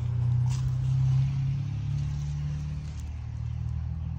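A steady, low, even-pitched hum from a running engine or motor.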